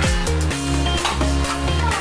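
Background electronic music with a steady beat and deep bass notes.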